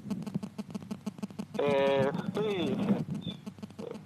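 A man's voice heard over a remote phone-style line: one short held vocal sound and then a falling one about halfway through, with dense crackling clicks on the line around them.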